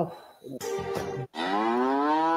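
A woman's voice holding one long sung "aaa" note as mock vocal practice (riyaz). It starts about a second and a half in, slides up at first, then holds steady and runs on past the end.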